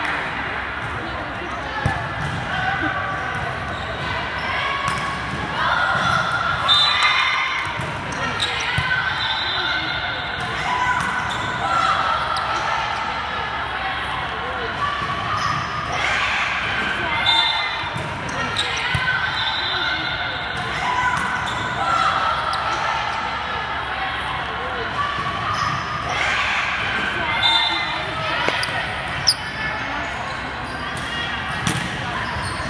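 Volleyball match sounds in a large gym: the ball being hit and bouncing, with players' voices calling out, all echoing in the hall. A sharp hit stands out near the end.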